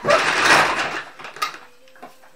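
Pillow-fight scuffle: about a second of loud fabric rustle and scuffling as a pillow is swung and lands, fading out, then a single sharp click.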